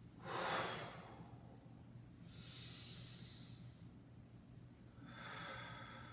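A person breathing hard through a repeated yoga movement: a sharp breath out just after the start, a softer, longer breath in around the middle, and another breath near the end with a faint whistling tone.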